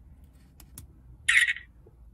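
BOOGIIO OK-831 dash cam's electronic shutter sound as it takes a photo: a short, high burst a little over a second in, after a couple of faint button clicks.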